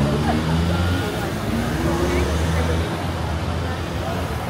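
Car engines running in slow city traffic as cars pass close by, a steady low rumble, with the voices of passers-by talking over it.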